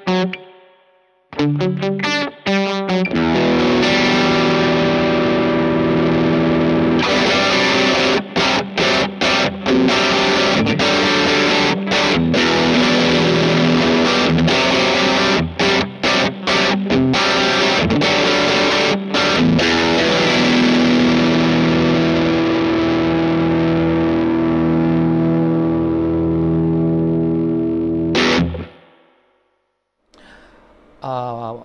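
Squier Telecaster electric guitar played through an Adag Audio Paul's Drive overdrive pedal, a transparent Timmy-style drive, into a Joyo Bantamp amp. It opens with a few short clipped chords, then mildly overdriven chords ring out with several brief stops. The playing cuts off abruptly near the end.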